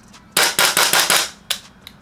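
EMG CGS Noveske N4 gas blowback airsoft rifle firing a rapid full-auto burst of about half a dozen sharp cracks, with the bolt cycling on each shot. One more single crack follows about a second and a half in.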